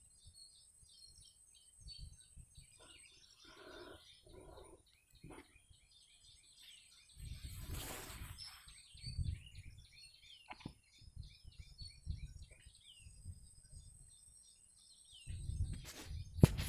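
Faint birds chirping in the background, many short high chirps scattered throughout. A brief louder rustle comes about eight seconds in.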